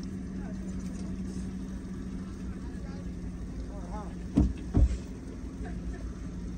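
Steady low hum of an idling vehicle engine among a large flock of goats, with a goat bleating briefly about four seconds in. Two loud thumps follow close together just after the bleat.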